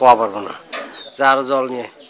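A man's voice making two drawn-out wordless sounds: a short one falling in pitch at the start, and a longer, steadier low one in the second second.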